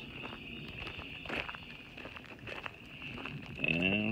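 Footsteps on a dirt creek bank, scattered small steps and rustles, over a steady high-pitched insect drone.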